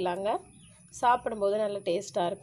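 A woman's voice speaking, in a short phrase at the start and a longer one from about a second in, with a pause between.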